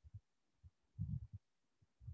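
A few faint, short low thumps in a quiet pause, the strongest small cluster about a second in.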